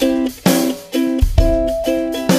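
Background music: plucked guitar chords over a steady beat.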